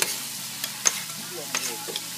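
Fried rice sizzling on a hot flat-top griddle, with metal spatulas scraping and clicking against the griddle several times.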